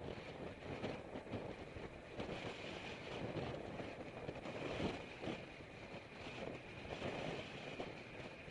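Wind buffeting the microphone of a camera on a moving road bicycle, mixed with tyre and road noise from riding on asphalt, swelling and falling unevenly.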